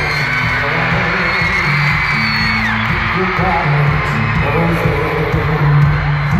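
Live pop music played by a band on an arena stage, with a loud, steady bass line. High screams and whoops from the crowd rise over it, the loudest gliding up and down in the first half.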